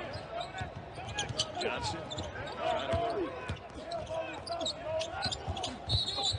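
Basketball being dribbled on a hardwood court, a run of short bouncing knocks.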